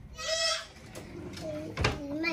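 A young child's short, high-pitched vocal squeal, like a bleat, followed by faint voices and a single thump near the end.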